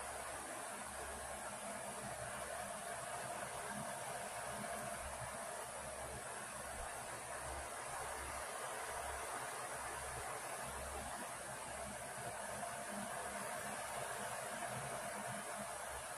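Steady hiss of background noise with a faint low hum that comes and goes; no distinct tool or handling sounds stand out.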